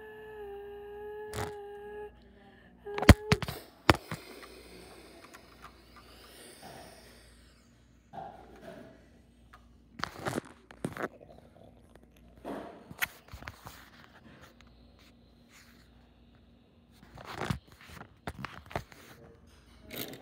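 A voice holds one note for about two seconds, then toy cars knock and scrape on a tabletop, with a sharp knock about three seconds in (the loudest sound) and scattered thunks and scrapes after it.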